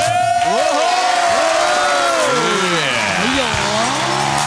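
Studio guests and audience cheering and whooping, many voices overlapping and calling out in rising and falling pitches, as the dance music cuts out.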